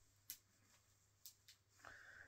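Near silence, with a few faint, short ticks from fingertips massaging oil into the scalp.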